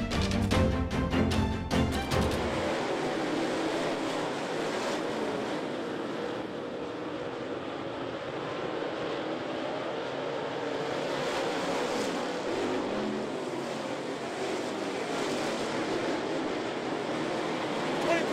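Intro music ends about two and a half seconds in. It gives way to the steady mixed noise of a field of dirt late model race cars running at speed around a dirt oval.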